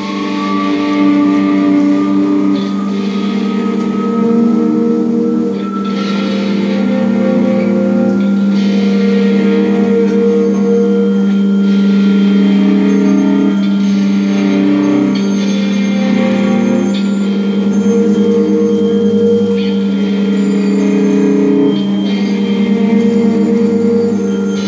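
Live improvised electric guitar and electronics: a dense, sustained drone of layered steady tones over a held low note, with one tone slowly rising in pitch over the first few seconds.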